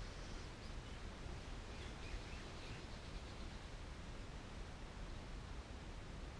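Quiet outdoor background ambience: a steady low hum under a faint even hiss, with no distinct events.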